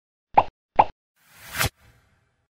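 Cartoon sound effects for an animated logo intro: two quick pops, each dropping in pitch, about half a second apart, then a rising whoosh that cuts off suddenly.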